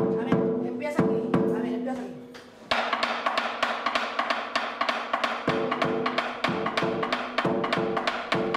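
Tumba francesa drumming: a large goat-skin drum is struck with a ringing tone, then from about three seconds in a fast clatter of wooden sticks on the catá, a hollow trunk, takes over. The ringing drum strokes come back in at a steady beat about halfway through.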